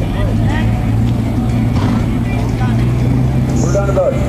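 A steady low motor hum, with faint voices over it.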